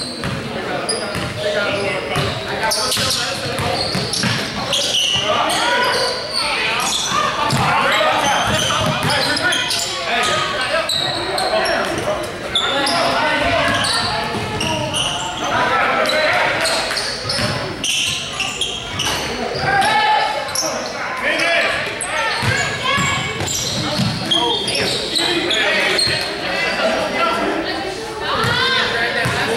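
Basketball game on a hardwood gym floor: the ball bouncing and players calling out to each other, echoing in a large hall.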